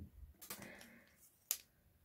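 Faint clicks and creaks of a 3D-printed PLA turbine being forced by hand onto the shaft of a Dyson DC23 head's brush bar, a tight press fit. One sharper click comes about one and a half seconds in.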